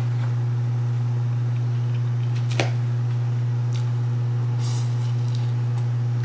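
A steady low hum from a running appliance, with a single sharp click about two and a half seconds in and a few faint ticks.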